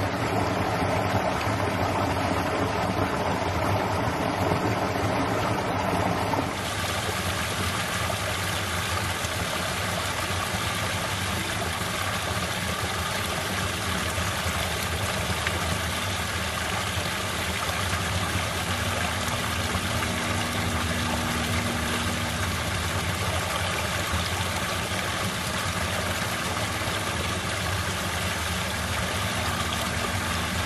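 A woodland creek running over a shallow sandy bed. About six seconds in it changes suddenly to a small waterfall splashing into a pool, a brighter, hissier rush of water, with a faint steady low hum underneath.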